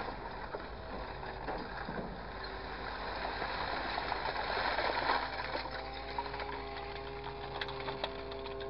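Grapple truck's engine and hydraulics running with a steady whine while the orange-peel grapple closes on a pile of loose material and lifts a load. A rougher, louder stretch of mechanical noise builds toward the middle as the grapple bites into the pile, and a few small clicks come near the end.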